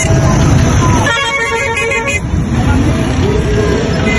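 A vehicle horn blows one steady note for about a second, starting about a second in, over the low rumble of slow-moving vehicles and voices.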